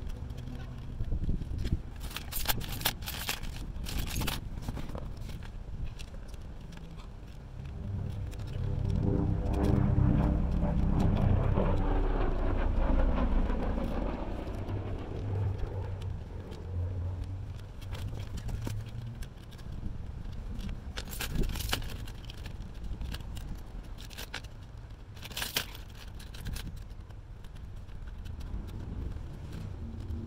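Small metal hardware and keys handled and set down: scattered clicks, scrapes and key jangles from a solar panel's aluminium tilt bracket being fitted. From about eight to fifteen seconds in, a passing car's engine and tyres swell and fade.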